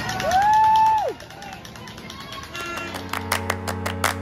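Street crowd noise with one long, high spectator cheer that rises, holds for about a second and falls away. About two-thirds of the way through, music with a steady beat comes in.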